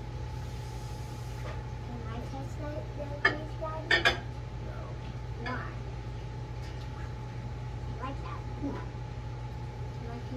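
A ceramic bowl being handled in a microwave, clinking and knocking against the glass turntable a few times, loudest about three to four seconds in, over a steady low electrical hum.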